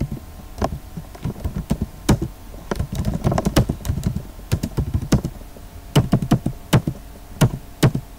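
Typing on a computer keyboard: uneven runs of key clicks with short pauses between them, as terminal commands are entered.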